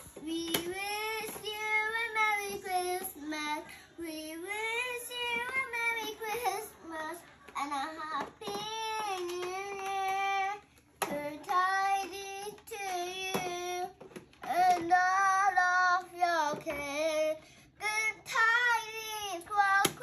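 A young girl singing into a toy microphone, long held notes in phrases of a few seconds broken by short pauses.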